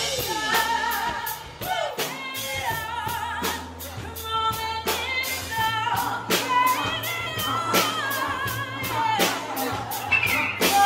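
Women singing with a live band: several voices carry a wavering melody over sustained bass notes and a steady drum beat.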